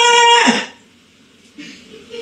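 A high-pitched human voice holding one drawn-out note, like a sung or hummed 'ooh', for under a second: it rises into the note, holds it steady, and falls away.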